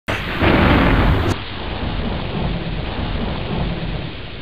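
A loud rushing noise with a low rumble, over a TV station's opening ident. It is loudest from about half a second to just over a second in, then settles into a steadier rush.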